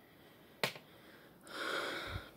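A single sharp click about half a second in, then a person breathing out for just under a second, a sigh-like breath.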